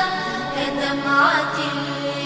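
Background music: a wordless chanted vocal passage over a held low drone, with a sliding vocal line about a second in, part of an Arabic song.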